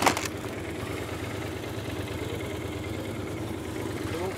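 A police motorcycle's engine and a car's engine run low and steady as the two vehicles slow and stop at the roadside. A single sharp knock sounds right at the start.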